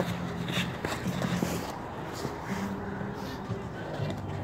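Quiet scuffling of two people grappling on paving stones, with faint voices in the background and a few small knocks.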